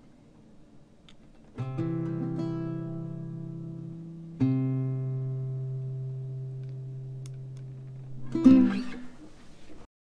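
Antonio Lorca 1015 classical guitar playing chords. One chord rings out about a second and a half in, and a second is struck about three seconds later and left to fade. A short, louder strum comes near the end, then the sound cuts off.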